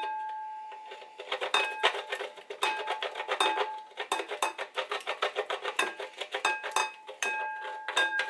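Beeswax being grated on a metal box grater: a ringing tone from the grater fades over the first second, then quick, rapid rasping strokes go on, the thin metal ringing through them.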